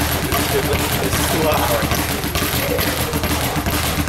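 Speed bag being hit with hand-wrapped fists, rattling against its rebound platform in a rapid, even rhythm.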